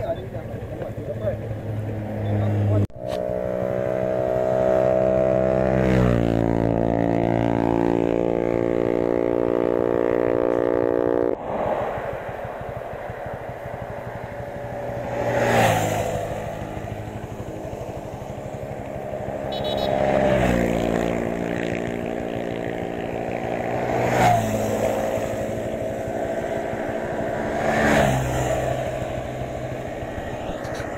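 Small motorcycle engine running while riding. Its note holds steady, steps up, then drops off abruptly, and later swells and falls several times.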